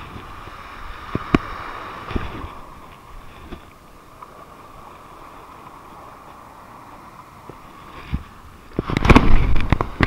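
Low wash of surf and wind with a few small clicks and taps. Near the end comes a sudden loud burst of knocking and rubbing as the camera is grabbed and handled.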